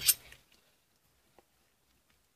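Near silence: room tone, with one faint tick about one and a half seconds in.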